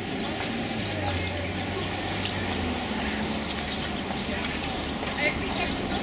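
Outdoor street ambience: indistinct distant voices over a steady low engine hum that fades out a little before halfway, with a few small clicks.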